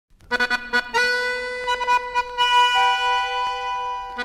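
Accordion opening a chamamé: three quick staccato chords, then a long held chord, with a new higher note joining a little past halfway and held to the end.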